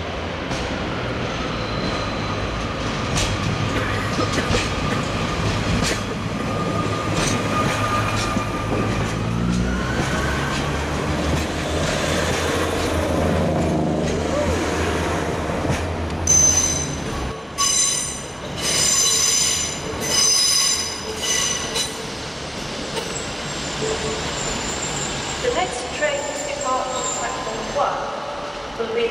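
Northern Rail Class 150 Sprinter diesel multiple unit moving slowly through the station, its underfloor diesel engines droning with a faint whine. A little past halfway the drone drops away and the wheels squeal on the track in three short, high-pitched bursts.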